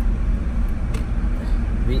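Steady low rumble of driving noise inside a moving vehicle's cabin.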